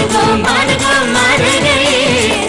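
Live stage orchestra playing an Indian film song, a sung melody over a drum kit and percussion, all instruments played live.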